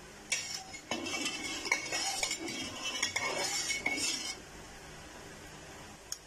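Metal perforated skimmer stirring salt into water in a metal karahi, scraping and clinking against the pan for about four seconds before stopping.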